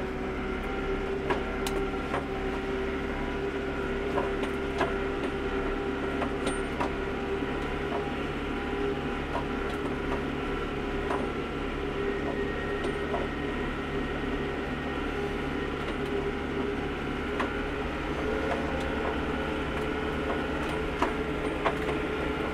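Yanmar compact tractor's diesel engine running at a steady speed, with scattered light clicks and knocks.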